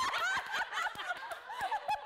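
A group of women laughing together, several voices at once, with a few hand claps among the laughter.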